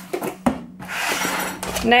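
A few light clinks of a metal spoon against a ceramic bowl, then about a second of rustling as a cardboard box is handled and put aside.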